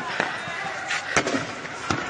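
Sharp bangs of tear-gas shells being fired, several in two seconds, the loudest just past the middle and near the end, over distant crowd noise.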